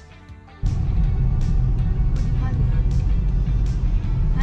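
Background music, then, about half a second in, a sudden switch to the loud low rumble of a moving car heard from inside the cabin, with the music carrying on over it.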